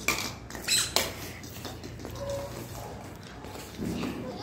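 A toy bat and ball clattering on a hard tiled floor: three sharp, clinking knocks in the first second, then quieter.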